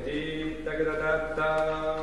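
A conductor singing a long phrase to demonstrate it to the orchestra, in a man's voice: three held notes, the pitch changing about two-thirds of a second in and again near a second and a half.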